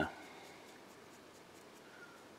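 Faint, quick scratching strokes of a stiff, nearly dry paintbrush flicked back and forth over a textured plastic miniature: dry brushing a light highlight onto raised stone detail.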